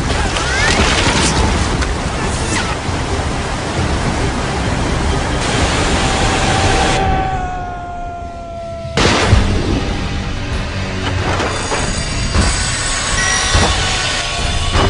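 Film soundtrack: dramatic music over the rush of whitewater, with a long slowly falling tone and then a sudden loud crash about nine seconds in.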